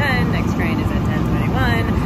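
A steady low rumble from a train at the station platform, with a woman speaking briefly over it.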